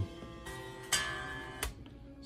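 Electric guitar strings plucked and left ringing as their pitch is checked against tuning, with sharp pluck attacks about half a second in, about a second in, and a short click near the end.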